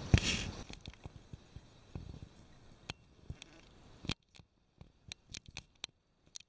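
Handling noise from a handheld camera: a sharp bump at the start, then faint scattered clicks and crackles, falling to near silence with a few isolated ticks over the last two seconds.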